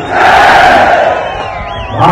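Large rally crowd cheering and shouting, loudest at the start and dying down over the second half, with a short wavering high tone near the end.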